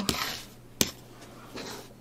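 Rotary cutter blade finishing a cut through layered quilting cotton on a cutting mat, a soft hiss that fades out, then a single sharp click as the acrylic ruler and cutter are handled.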